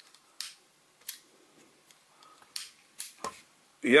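Sharp metallic clicks, about five and irregularly spaced, as the slide of a homemade Colt Woodsman–style pistol lighter is worked along its metal frame.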